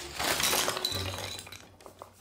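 Clatter of plastic pens and markers spilling from a tipped-over wicker basket onto the floor, a dense rattle that fades out over about a second and a half, with a few last clicks as stray pens settle.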